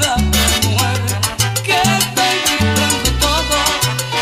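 Salsa music: a bass line stepping between held notes under dense, steady percussion, with melodic lines above.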